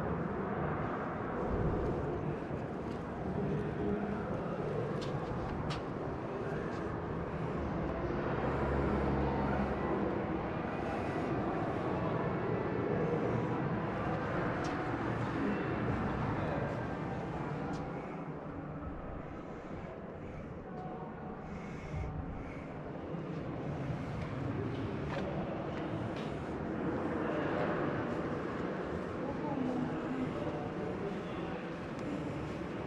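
Indistinct murmur of background voices over steady room noise, with no clear words.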